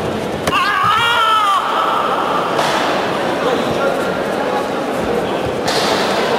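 A loud, wavering shout about half a second in, lasting about a second, over the steady hubbub of a crowd in a large sports hall; a fainter voice follows, and there is a short noisy burst near the end.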